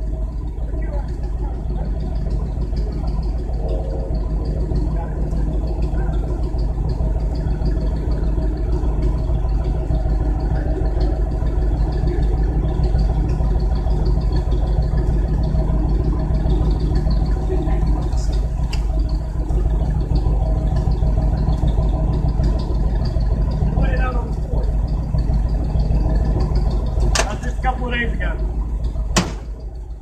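A vehicle engine idling steadily close by, a constant low rumble, with a couple of sharp clicks near the end.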